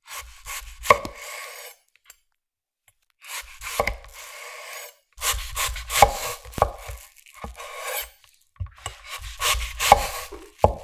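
Kitchen knife slicing thinly through a skin-on apple half on a wooden cutting board: about five cuts, each a rasp through the apple flesh with a sharp tap of the blade against the board.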